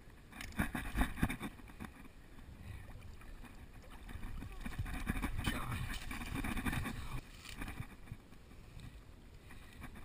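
A carp shot with a bowfishing arrow being hauled out of the creek onto the bank. There are a few sharp knocks about a second in, then a louder stretch of splashing and rustling in the middle.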